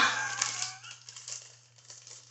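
A plastic packet crinkling as it is handled close to the microphone. The sound starts suddenly and fades away over about a second and a half.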